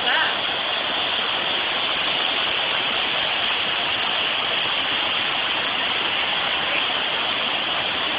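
Overflowing creek in flood, its fast, high water rushing in a steady, unbroken wash of noise.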